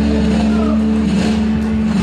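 Live instrumental rock band, led by several electric guitars over bass, holding a loud, sustained chord, with a guitar note sliding in pitch over it.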